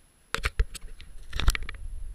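Sharp splashes and knocks from a kayak being paddled through foamy fast water, heard from a camera on its deck, over a low rumble of water and wind. A few single hits come about half a second in, then a quick cluster around a second and a half.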